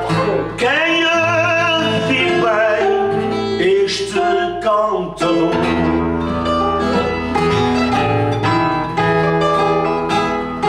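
Cantoria ao desafio: a man sings a verse with a wavering vibrato over plucked guitar accompaniment, including a Portuguese guitar. The voice stops about five seconds in, and the guitars carry on alone in an instrumental interlude.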